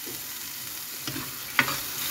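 Chilly paste sizzling steadily in coconut oil in a clay pot, with a metal spoon stirring through it and one sharp click of the spoon against the pot about one and a half seconds in.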